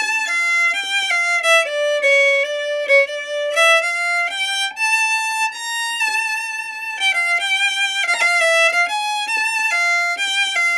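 Solo violin playing a klezmer melody, one bowed line of shifting notes with a longer held note about five seconds in.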